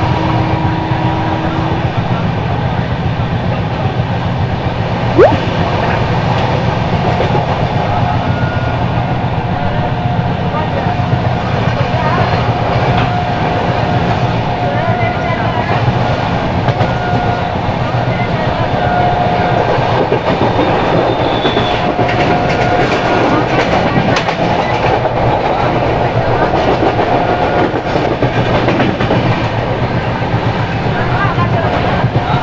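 An Indian Railways express coach running along the track, heard from its open doorway: a steady rumble of wheels on rail with wind rush, and a single sharp knock about five seconds in. The clatter of wheels over rail joints grows busier in the second half.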